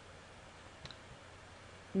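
A single faint computer-mouse click a little under a second in, over a low steady hiss of room noise.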